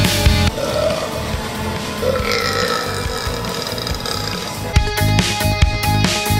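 Background rock music whose drums drop out for about four seconds in the middle. In that gap a man burps loudly, with a long low burp coming about two seconds in.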